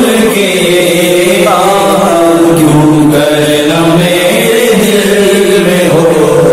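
A man singing an Urdu naat in praise of the Prophet, drawing out long held notes that bend and waver from one to the next without a break.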